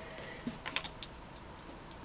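Faint, light clicks of tarot cards being handled, a few small clicks clustered between about half a second and a second in.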